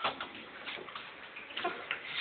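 A few light, irregular clicks and ticks.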